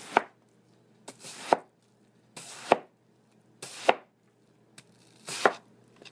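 A big chef knife chops down through a peeled watermelon onto a cutting board five times, about a second and a quarter apart. Each stroke is a short swish through the flesh that ends in a sharp knock on the board.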